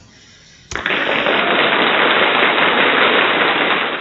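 A dense, steady crackling noise that starts abruptly about three-quarters of a second in and stays loud and even. It is an added sound effect that goes with the "Thank you" slide.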